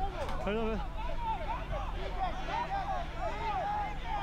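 Several men's voices shouting over one another on a football pitch, an on-field argument over an offside call that has stopped the game.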